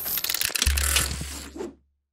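Sound design of an animated logo sting: rapid mechanical clicking and ticking with a rushing noise, joined just after half a second by a low bass tone, the whole fading out shortly before the end.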